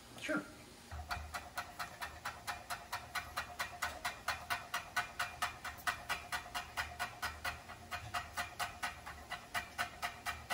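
Chef's knife slicing rolled-up basil leaves into fine strips on a wooden cutting board: a steady run of knife taps on the board, about four a second, starting about a second in.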